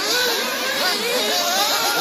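Several 1/8-scale nitro buggy engines whining at high revs, their pitch rising and falling as the drivers work the throttle.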